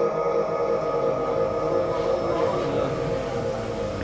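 The reverberant tail of a Quran reciter's chanted note ringing through the hall's loudspeaker system, fading away over a couple of seconds in the pause between verses, over a low room hubbub.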